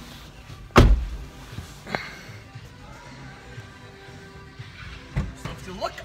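A car door shutting with a heavy thump about a second in, followed by a lighter knock about a second later and another near the end, over faint background music.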